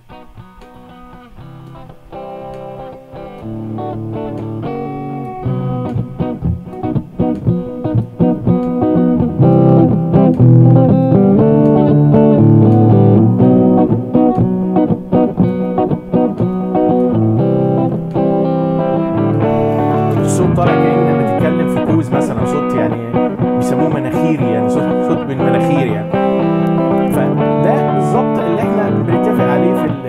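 A recorded guitar track playing back through a graphic equalizer as its band sliders are moved, with the highs cut and the low-mids boosted. It starts thin and quiet and grows louder and fuller over the first ten seconds, then turns brighter about twenty seconds in.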